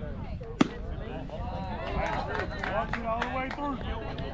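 A single sharp smack of a baseball at home plate about half a second in.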